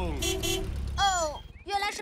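Cartoon car horn giving a short toot as the car arrives, over the car's low engine rumble. The rumble breaks into a putter and stops about a second and a half in.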